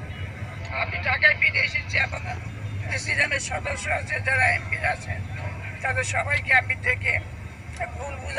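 An elderly woman speaking Bengali, in continuous speech, over a steady low hum.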